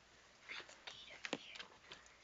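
A person whispering, in short breathy bursts, with a sharp click about a second and a half in.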